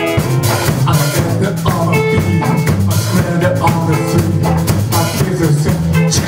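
A rock band playing live: electric guitar, bass and drum kit with a steady beat.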